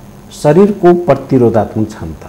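A man speaking (Nepali speech), starting about half a second in after a short pause.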